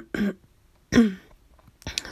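A woman clearing her throat: two short vocal noises, the second about a second in and louder, starting with a sharp catch.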